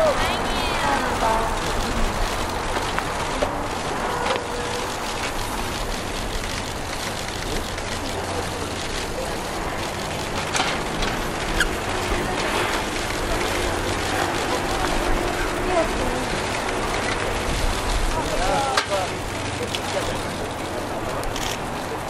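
Faint, scattered voices over a steady low rumble of open-air background noise, with a few brief clicks.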